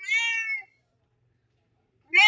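Domestic cat meowing once: a short call of about half a second that falls slightly in pitch at the end.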